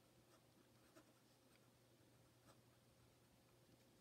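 Faint scratching of a pen writing on lined paper, a few light strokes.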